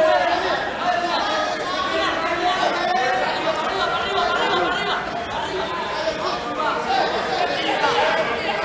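A crowd of spectators chattering: many overlapping voices talking at once, with no single speaker standing out.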